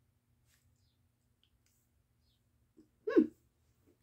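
Near silence for about three seconds, then a woman's short, hummed "hmm" near the end.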